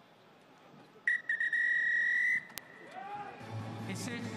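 Referee's whistle blown for full time: a brief stutter, then one long shrill blast of a little over a second. Music fades in near the end.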